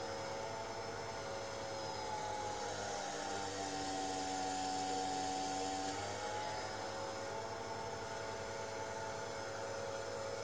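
Upgraded electric fuel pump for a Kawasaki Ninja H2 running steadily with a whine, pumping against fuel pressure raised by boost on a rising-rate regulator while drawing about 11 to 13 amps. Its pitch drops slightly about three seconds in and comes back up about six seconds in.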